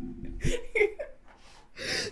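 Women laughing in short bursts with a brief "yeah", ending in a sharp gasping intake of breath.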